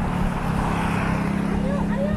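A steady low mechanical hum, with a brief swell of noise about halfway through, and voices of people nearby talking near the end.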